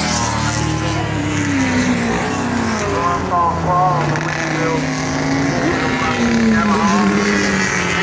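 Racing motorcycle engines running on the airfield circuit, their pitch slowly rising and falling as the bikes pass, with voices from the crowd.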